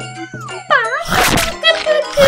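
Cartoon-style sound effects over background music: gliding tones that fall and swing during the first second, then two bright, sparkling jingles about a second apart.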